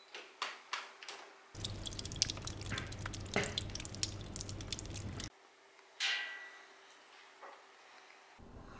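Water dripping off a soaking-wet person onto a tile floor. There are a few separate drops at first, then a dense patter of drips for about four seconds.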